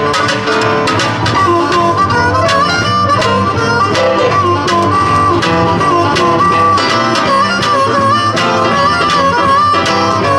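Live blues band playing: a harmonica lead with bent, wavering notes over acoustic guitar and electric bass.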